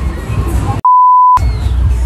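A steady high-pitched censor bleep, a little over half a second long, starting just under a second in, with all other sound cut out while it plays. Before and after it there is a rumbling noise with fairground music in the background.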